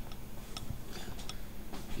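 Faint, irregularly spaced sharp clicks, a handful of them, over a steady low hum.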